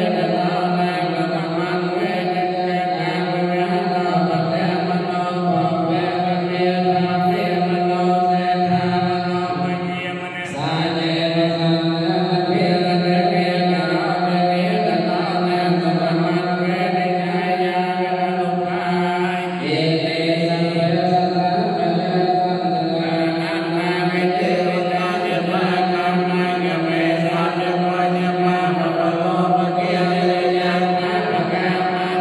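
Theravada Buddhist monks chanting the evening homage in long, steady held tones, the lead voice amplified through a handheld microphone. There is a short break about ten seconds in, and the pitch shifts near twenty seconds in.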